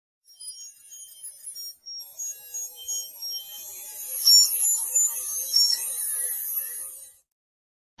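Electronic logo-intro sting: a run of short, high beeping tones, joined about two seconds in by a bright hiss and chiming high notes. It cuts off suddenly about seven seconds in.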